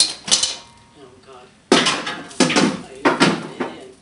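Loud metal-on-metal clanks and rattles from tools and parts being handled during an engine removal: about five sharp hits, the loudest starting about halfway through.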